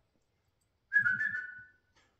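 A man whistling once to call a puppy to him: one short whistled note that starts about a second in and falls slightly in pitch.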